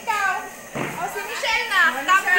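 Girls' high-pitched voices, excited chatter and exclamations, rising and falling in pitch, with a brief breathy rush just before the middle.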